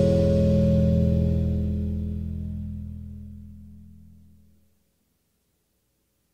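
A rock band's last chord ringing out, electric guitar and bass sustaining and fading steadily, dying away to silence about four and a half seconds in.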